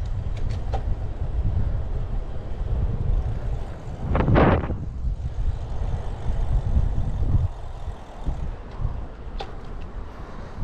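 Wind rumbling on the microphone of a camera mounted on a moving road bike, with road noise from the tyres. A brief louder whoosh comes about four seconds in, and a few light clicks near the start and near the end.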